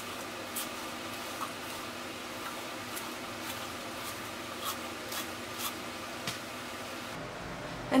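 A hairbrush drawn through long curled hair, about a dozen soft, irregular rubbing strokes, faint over a steady room hum.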